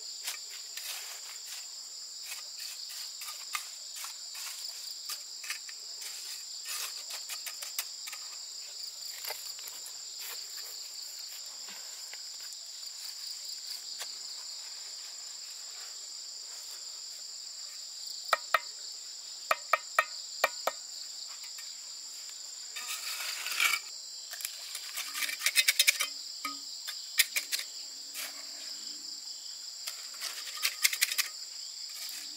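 A steady chorus of insects, shrill and unbroken throughout. Over it come scattered sharp taps and scrapes of a steel trowel on mortar and concrete blocks as the blocks are set, with a run of clicks past the middle and a burst of clatter a little later.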